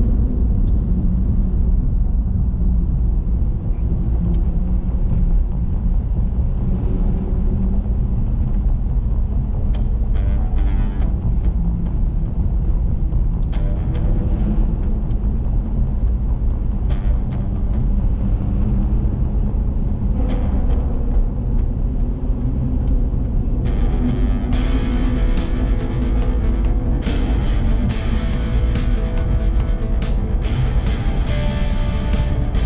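Steady low rumble of a car driving through a road tunnel, heard from inside the car, with music under it. About three-quarters of the way through, the music turns suddenly fuller and brighter.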